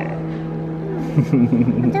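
Voices over a steady low hum, with a laugh at the start and a wavering voice in the second half.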